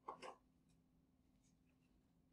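Near silence, with faint scratches and taps of a stylus on a pen tablet as a line is drawn. A brief faint sound comes right at the start.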